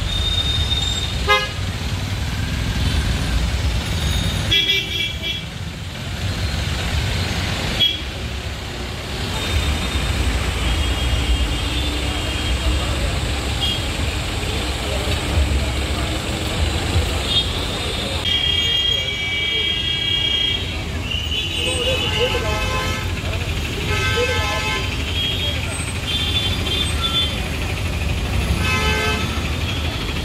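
Busy city road traffic: a steady engine rumble with vehicle horns honking again and again, several long honks in the second half, and voices in the background.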